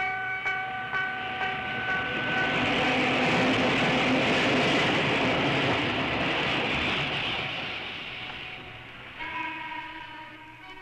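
A train passing: a steady rumble and rush of running noise that swells to its loudest mid-way and fades away. It opens with a held steady tone.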